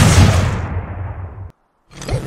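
Explosion sound effect: a loud blast that dies away over about a second and a half, then cuts off suddenly.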